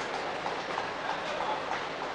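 Indoor sports-hall ambience: a steady murmur of the arena, with a few faint, short squeaks of court shoes on the floor.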